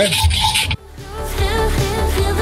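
A pop song with a singer's voice and a steady low beat comes in suddenly just under a second in, after a short stretch of outdoor background noise.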